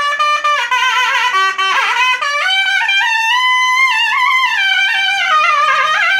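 Background music: a single trumpet-like brass melody that wanders up and down in pitch, with slides and wavering notes.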